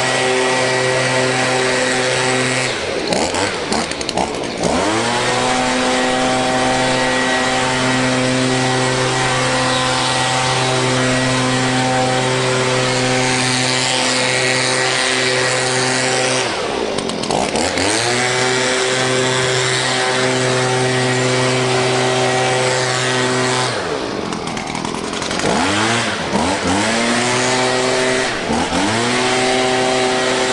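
Handheld gas leaf blower engine running at steady high throttle. The throttle drops off and the engine revs back up about three seconds in and again in the middle, then several times in quick succession near the end.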